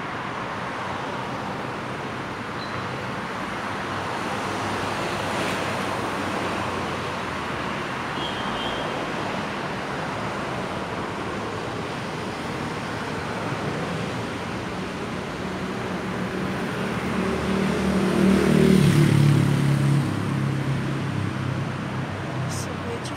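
Steady city street traffic noise, a continuous rush of passing vehicles. A vehicle's engine grows louder and passes about three-quarters of the way through.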